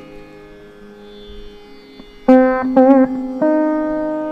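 Chitravina, a fretless slide lute, playing a slow passage in raga Neelambari over a steady tanpura drone. The first half holds fading notes, then fresh plucks come in a little past halfway, with notes bent in wide oscillating slides.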